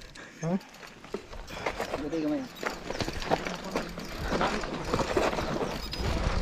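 Mountain bike rolling down a rocky, loose-gravel trail: tyres crunching over stones and the bike rattling, in a dense run of sharp clicks that grows louder from about a second in. A low wind rumble on the helmet camera's microphone builds toward the end.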